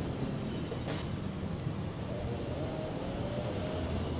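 Steady hum of urban street traffic, with a faint whine that slowly rises in pitch in the second half.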